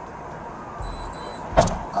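Steady low rumble of street traffic beside a parked patrol car. Two short high-pitched electronic beeps sound around the middle, and a single sharp knock comes near the end.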